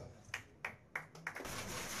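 Four sharp clicks about a third of a second apart, then a rustling noise from about one and a half seconds in.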